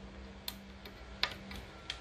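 Three light clicks spread out over two seconds, the middle one loudest, as a hand handles the wire at a door-mounted contact sensor, over a faint steady low hum.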